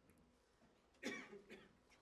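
A short cough about a second in, with a smaller second burst just after, against near silence in a small room.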